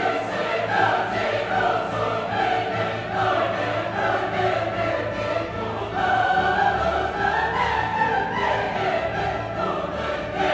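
Choral music: a choir singing slow, held lines over a steady low accompaniment.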